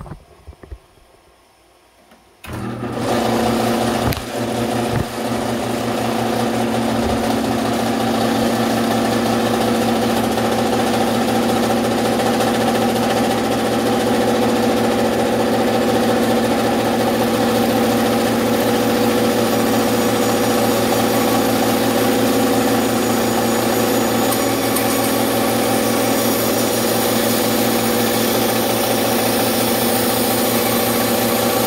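A Craftsman scroll saw switched on about two and a half seconds in, then running steadily with a motor hum, with a few knocks soon after it starts, while a small cedar ring blank is worked against the blade.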